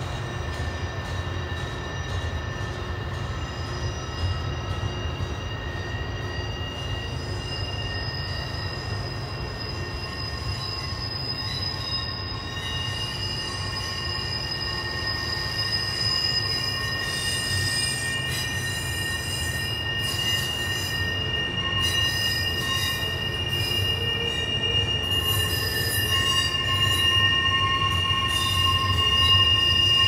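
Intermodal freight cars rolling slowly round a tight curve: a steady low rumble of wheels on rail, with long, steady high-pitched wheel squeal that gets louder in the second half.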